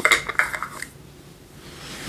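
A cosmetics jar handled in the hands: a quick run of light clicks and clatter in the first second, then fainter handling noise.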